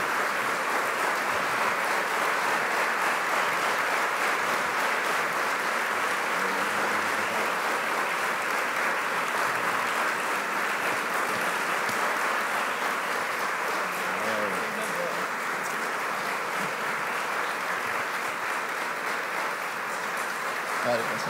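Audience applauding steadily, fading slightly toward the end.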